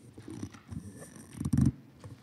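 Handling noise from a gooseneck pulpit microphone as it is gripped and bent: irregular rustling and scraping, with one loud thump about one and a half seconds in.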